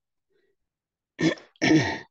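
A man coughs twice in quick succession, starting a little over a second in, the second cough longer and louder.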